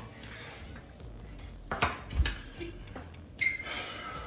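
A metal spoon knocking against a dessert plate while scooping cheesecake: two sharp clicks about two seconds in, then a brief ringing sound near the end.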